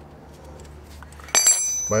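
A steel combination wrench is set down on stone pavers about a second and a half in: one sharp metallic clink that rings briefly in several high tones.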